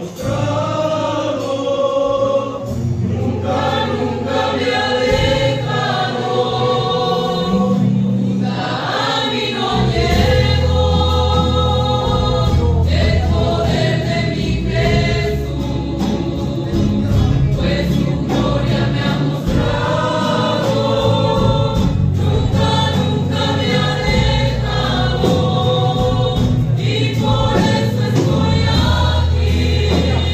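Christian gospel song sung by a group of voices together, with a bass line underneath.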